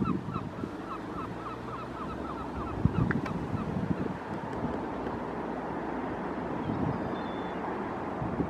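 A bird calling over and over, about five short notes a second, fading out in the first couple of seconds, over steady wind noise on the microphone.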